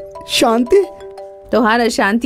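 Smartphone ringtone for an incoming video call: a chiming melody of held notes, one after another, that stops about one and a half seconds in, with a voice speaking over it.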